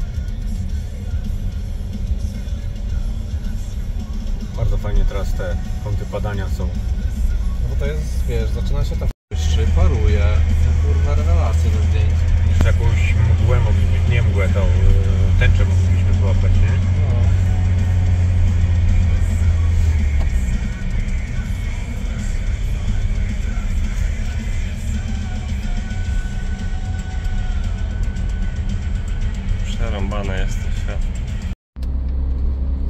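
Steady road and engine rumble heard inside a moving car's cabin, heavier for a stretch after about nine seconds, with music and voices over it.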